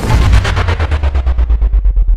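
A loud rapid-fire sound effect like a machine-gun burst, about ten sharp shots a second over a deep rumble.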